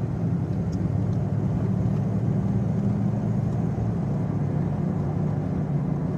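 Steady car engine and tyre drone heard from inside the cabin while driving on a wet road.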